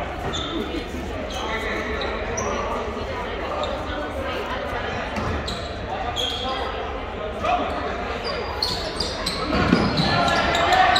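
Basketball game in a gymnasium: a basketball bouncing on the hardwood floor as it is dribbled, brief high sneaker squeaks, and spectators' voices, all echoing in the large hall.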